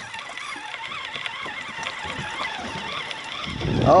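Steady wash of wind and water around a small boat at sea.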